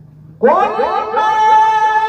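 A male Qur'an reciter's high voice, amplified through a microphone and PA. It comes in suddenly about half a second in and slides up into a long, loud held note in melodic tilawah style.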